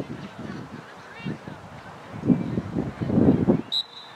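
Geese honking, a run of short calls that grows louder in the second half, with a brief high whistle near the end.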